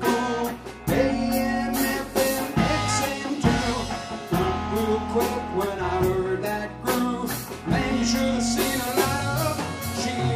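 Live country-rock band playing an instrumental passage between sung lines: electric guitars over bass and a drum kit keeping a steady beat with cymbal hits.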